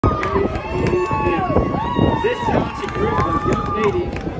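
Crowd of spectators cheering and calling out, many high voices overlapping, some held in long calls that rise and fall.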